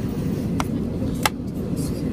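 Steady low drone of an airliner cabin, with two sharp clicks a little over half a second apart, the second louder.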